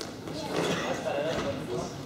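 Indistinct voices of people talking in a sports hall.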